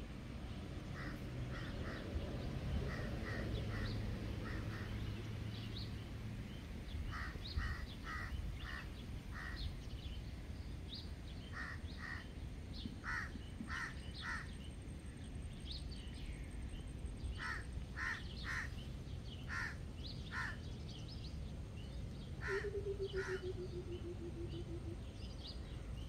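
Outdoor ambience: a bird calls repeatedly in short, harsh, caw-like notes, singly, in pairs and in short runs, over a low steady background noise. Near the end a lower note trills and falls in pitch.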